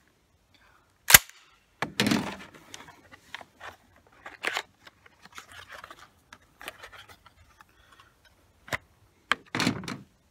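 A Mossberg 935 12-gauge semi-automatic shotgun and its shells being handled: one sharp metallic click about a second in, then scattered lighter clicks and clatters of shells and gun parts.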